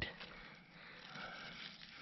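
Faint outdoor background noise with no distinct sound event, and a faint thin tone or two in the middle.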